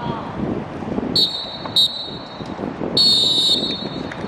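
A referee's whistle blown three times: a short blast, a very short one, then a longer blast, over faint voices on the pitch.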